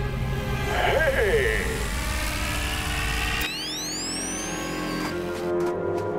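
Cartoon soundtrack: music over a low rumble, with a brief vocal exclamation about a second in. About halfway through, the rumble cuts off and rising high-pitched electronic sweeps start over the music.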